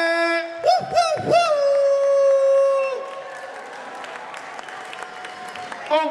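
A long, held, voice-like call with three quick swooping slides in pitch about a second in, stopping about halfway through, followed by quieter crowd noise from the audience.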